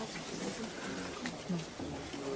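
Faint indistinct voices, and about one and a half seconds in a short, low, falling vocal grunt.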